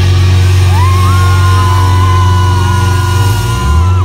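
Live rock band with electric guitar, bass and drums playing loud. A long held high note slides up just under a second in, holds for about three seconds over the steady bass, and drops away at the end.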